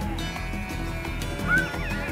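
Background music with a steady beat, and a short sheep bleat rising and falling about one and a half seconds in.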